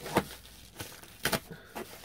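Knife tip poking small holes in a yellow padded paper mailer: about five short, sharp crinkling pops of paper and padding.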